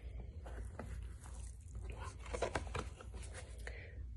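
Faint paper rustles and light clicks as a picture book's page is handled and turned, over a steady low hum.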